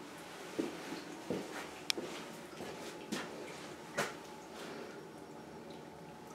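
Quiet basement room noise with a handful of soft, irregular knocks and a single sharp click about two seconds in; the loudest knock comes about four seconds in.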